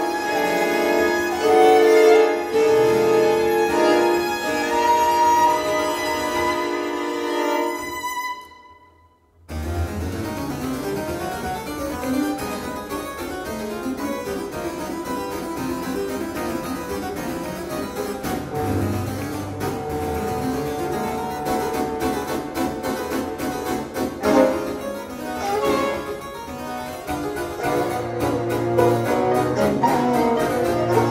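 Baroque string ensemble (baroque violins, baroque viola and viola da gamba) holding sustained chords that die away to a brief silence about eight seconds in. Then the harpsichord takes over with rapid, dense figuration, the strings joining with a low bass line underneath.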